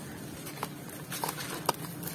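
Hands raking and crumbling dry sand-cement powder and chunks in a plastic tub: a gritty hiss with a few sharp crunching clicks, the loudest about three-quarters of the way through.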